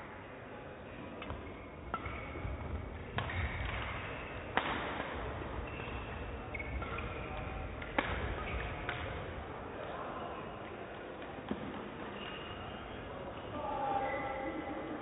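Sports hall ambience: distant voices echoing in a large hall, with a few sharp clicks, the loudest about four and a half and eight seconds in.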